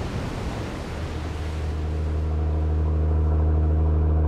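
A fishing boat's engine droning with a steady low hum that fades in over the first couple of seconds and then holds steady, while a wash of noise dies away in the first second.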